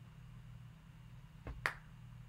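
Two sharp computer mouse clicks in quick succession about a second and a half in, the second one louder, over a steady low hum.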